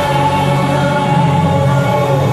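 Live arena concert music with singing, the voices holding long steady notes over the band.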